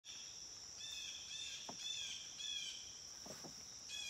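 Faint outdoor ambience: insects making a steady, high-pitched drone, with a bird calling four times in quick succession, about half a second apart, in the first couple of seconds.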